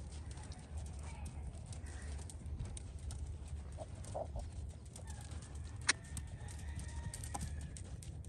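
Faint outdoor ambience: a steady low rumble with a few short faint animal calls about halfway through and a single sharp click near the end.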